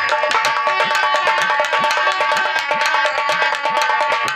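Instrumental interlude of live folk stage music: fast, dense hand-drum strokes over a steady melody instrument holding long notes, with no singing.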